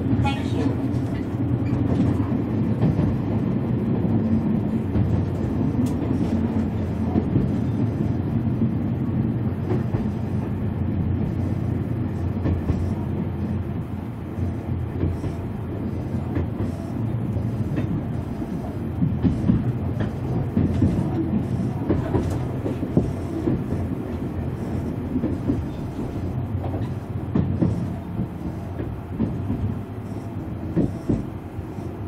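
Running noise inside a Tobu 500 series Revaty electric train car: a steady low rumble of wheels on rail, with a few sharper clicks about two-thirds of the way through.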